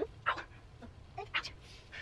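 A short, quiet "ow" right at the start, followed by a few short breathy sighs, the strongest about a second and a half in.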